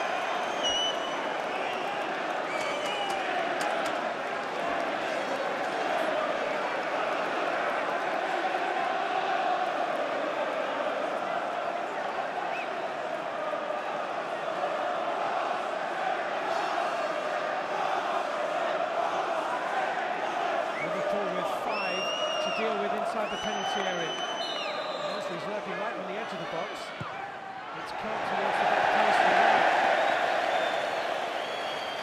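Football stadium crowd singing and chanting steadily. Two short blasts of a referee's whistle come about two-thirds of the way in, and the crowd noise swells near the end as a free kick is struck.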